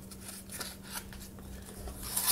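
Empty cardboard toilet-paper tubes being handled: a few faint scrapes and crackles as one tube is pressed in on itself and slid inside the others.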